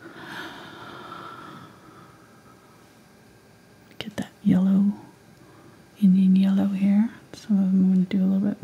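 A person's voice making short vocal sounds held at a single, level pitch, three times in the second half, after a soft breathy exhale at the start and a light click just before the first one.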